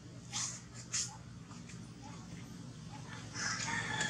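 A rooster crowing, starting about three seconds in, preceded by two short sharp noises near the start, over a low steady hum.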